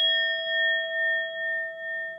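A notification-bell sound effect: one bright chime, struck just before the start, rings on with a wavering, slowly fading tone.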